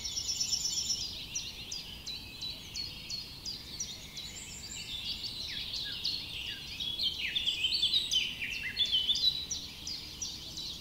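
A chorus of small birds chirping: many short overlapping chirps and quick falling notes, busier and louder in the second half.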